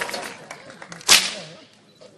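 A single sharp whip crack about a second in, ringing briefly in the room, as the last of the music dies away.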